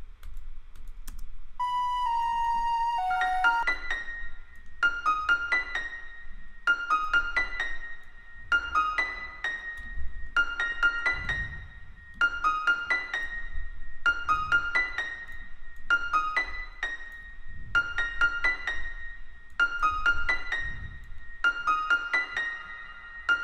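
Software piano in FL Studio playing a looped melody through reverb: after a few held notes, a short phrase of high notes repeats about every two seconds.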